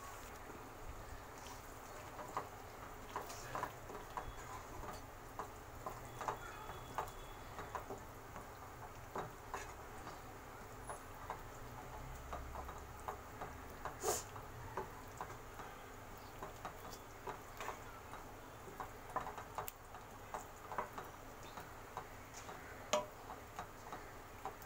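Wooden spatula stirring a thick masala gravy with boiled beans in a nonstick pan: faint, irregular soft taps and scrapes, with one sharper click about fourteen seconds in.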